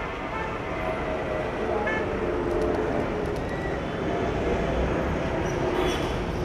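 Steady low rumble of idling vehicle engines, with faint distant chatter from people nearby.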